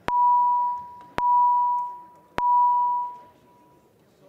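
Three identical ringing chime tones about a second apart, each starting sharply and fading away: a legislative chamber's signal that a roll-call vote is opening.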